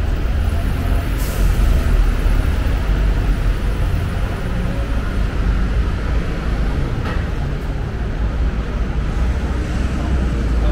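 Road traffic with double-decker buses and taxis passing: a steady low rumble of engines and tyres, with a short high hiss about a second in.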